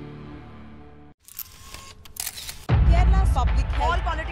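Promo soundtrack: a music bed fades out, then two camera-shutter click effects about a second apart, then a loud deep bass hit as new music starts with a voice over it.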